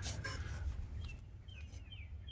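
A small bird chirping, several short falling notes in the second half, over a steady low rumble.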